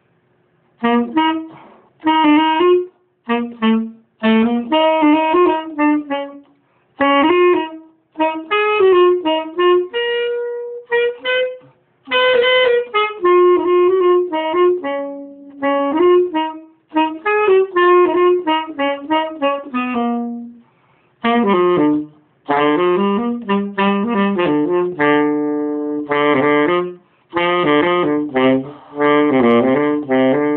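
Solo tenor saxophone played unaccompanied in fast runs of short phrases with brief breaks between them. In the second half it moves down into a lower range with quick repeated figures.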